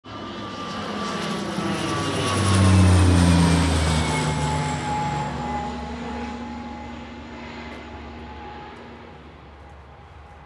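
Low-flying geological survey plane passing overhead: its engine sound swells to its loudest about three seconds in, drops in pitch as it passes, then fades away.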